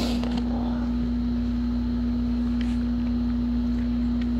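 A steady electrical hum: one unchanging low tone with a deeper hum beneath it, at an even level throughout, with a brief click just after the start.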